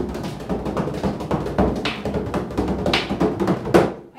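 Bodhrán frame drum beaten in a fast, dense roll, with a few louder accented strikes, stopping abruptly near the end.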